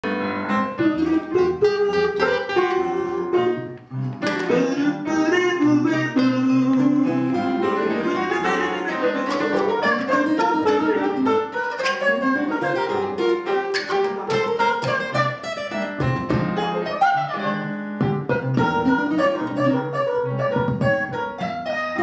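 Live improvised jazz from a small acoustic group: plucked acoustic guitar and keyboard, with a melodic line that slides up and down in pitch above them. The playing dips briefly about four seconds in, then carries on.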